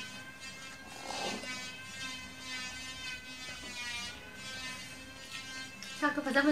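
A steady electrical buzzing hum with many overtones, wavering slightly in pitch near the middle, with a short rustling noise about a second in.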